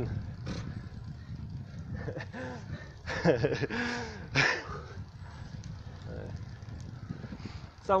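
A man's voice in a few short, indistinct bursts over a steady low rumble of wind and road noise from riding a bicycle.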